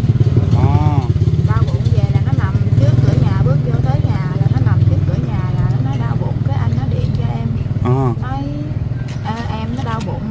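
A steady low engine drone runs without a break under a woman talking.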